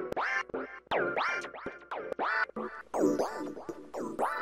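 Omnisphere synth lead patch 'Bug Trainer' from the Omniverse library, played on a keyboard: a rhythmic, pulsing lead whose notes swoop up and down in pitch about two to three times a second.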